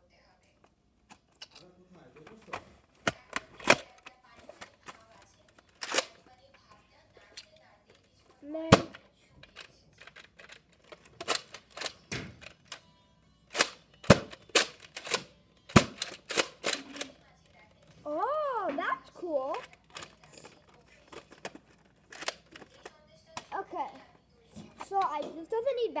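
Sharp plastic clicks and clacks, scattered and uneven, from a Nerf foam-dart blaster being handled and primed, its slide pulled back for loading.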